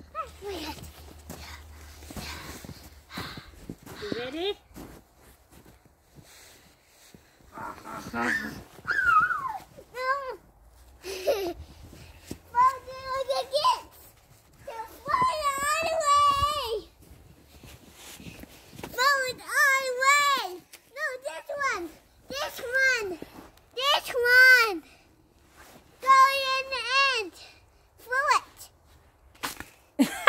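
A young child's wordless vocalising: a string of high-pitched squeals and sing-song calls, each rising and falling, coming thick from about eight seconds in.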